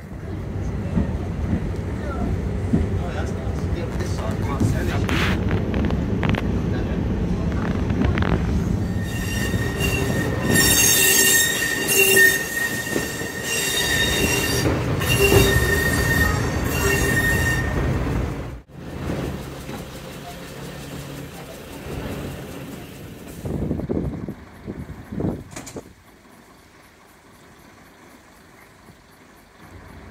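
A first-generation diesel multiple unit heard from on board while running, with a steady low rumble of engine and wheels on rail. About nine seconds in, a high wheel squeal comes and goes for several seconds. It cuts off abruptly about two-thirds of the way through, leaving quieter sounds.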